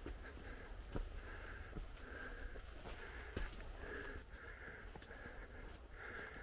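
Faint, soft scuffing about twice a second from a person walking along a dirt trail, over a steady low rumble on the microphone.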